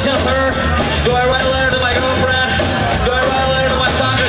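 Punk rock band playing live at full volume: electric guitar, bass guitar and drums.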